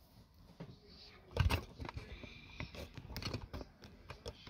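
Plastic knocks and clicks from handling a clear plastic bead organizer box and its lid on a desk. One sharp knock comes about a second and a half in, then a scatter of lighter taps and clicks.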